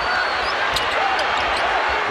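A basketball being dribbled on a hardwood court under a steady wash of arena crowd noise, as heard on a TV broadcast, with several sharp ball bounces through it.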